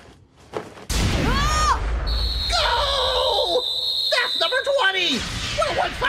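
A sudden loud low rumble starts about a second in and runs about four seconds, with voice-like cries over it and a steady high tone in the middle.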